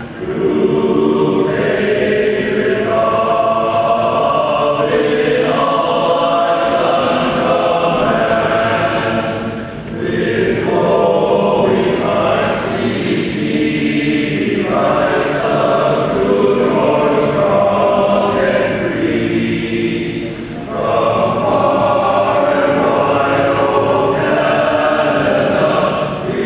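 Men's choir singing unaccompanied in sustained chords, with brief breaks between phrases about ten and twenty seconds in.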